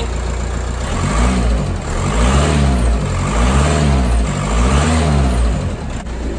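Audi 2.0 TDI BPW four-cylinder pumpe-düse diesel engine idling, then revved up and back down several times, about once a second, before settling back to idle. The engine has just been restarted after a rocker cover refit, with oil pressure still building to the hydraulic lifters.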